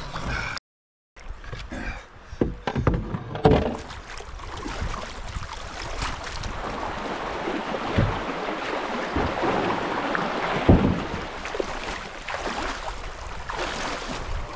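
Fast, shallow creek water rushing steadily around a wading person's legs and a canoe being lined through a swift. A cluster of hollow knocks from the canoe and paddle comes in the first few seconds, and a couple of single thumps come later.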